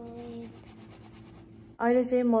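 Crayon scribbling on colouring-book paper: a quick, even run of rubbing strokes.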